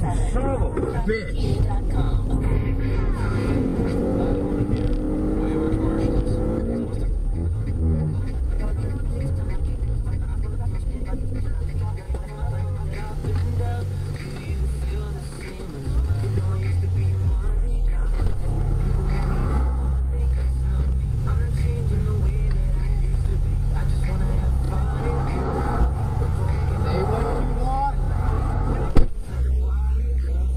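Road and traffic noise with a steady low rumble, mixed with indistinct voices and music in the background.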